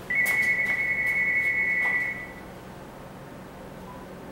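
An electronic beep: one steady high tone lasting about two seconds, then stopping, with a few faint clicks around it.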